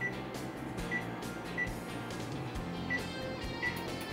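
Background music with about five short, high electronic beeps from an oven's control-panel keypad as its buttons are pressed to set it preheating.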